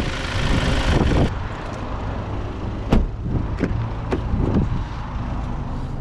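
Volkswagen Golf 8's 2.0 TDI four-cylinder turbodiesel idling steadily, with a few light knocks in the middle.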